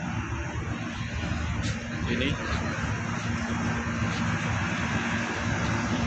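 Large outdoor air-conditioning units running, their big blower fans making a steady, even drone with a constant hum.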